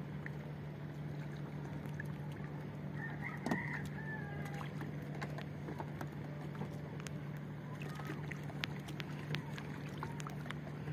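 A rooster crowing once, briefly, about three seconds in, over a steady low hum and scattered small clicks and knocks.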